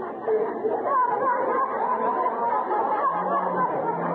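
Studio audience laughing, many voices overlapping in one long laugh.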